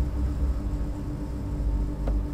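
Steady low background rumble with a constant low hum.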